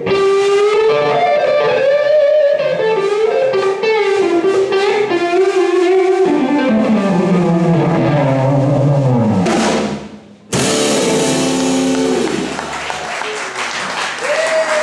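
A live blues band (electric guitars, bass and drum kit) playing, with an electric guitar lead of long bent notes and a descending run. About ten seconds in the band breaks off briefly, then comes in on a loud closing chord with a cymbal crash that rings out, ending the song.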